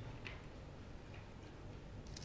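Quiet room with a low steady hum and a few faint ticks about a second apart.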